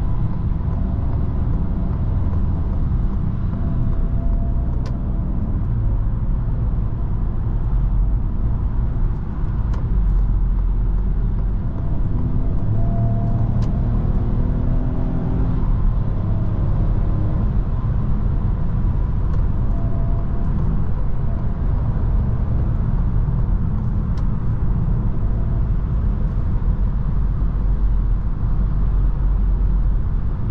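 Inside the cabin of a 2023 Citroën C5 Aircross cruising at about 100 km/h: a steady low rumble of tyre, road and wind noise with a faint drone from its 1.2-litre three-cylinder petrol engine.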